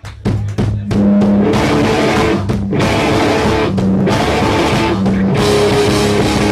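A punk rock band playing live, with drum kit, electric guitar and bass guitar. A few opening hits in the first second, then the full band comes in loud.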